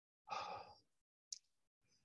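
A man's audible sigh, a single short breath lasting about half a second, followed by a faint brief click.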